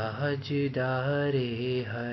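A man singing a qawwali unaccompanied, drawing out long wavering vowels with a brief break about half a second in.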